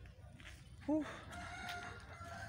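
One long, faint rooster crow, a steady pitched call starting just over a second in, preceded by a brief spoken 'ooh'.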